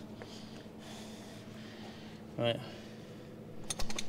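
Handling noise from a camera being repositioned: a quick run of sharp clicks near the end, over a faint steady hum.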